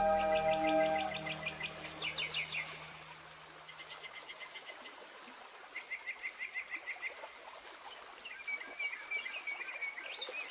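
The last held notes of a Celtic tune die away in the first second, with a low drone lingering a few seconds longer. Over it and then alone, faint birdsong: several quick runs of chirps, and a warbling call near the end.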